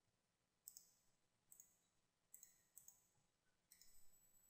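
Faint computer mouse button clicks, in quick pairs about four times, over near-silent room tone.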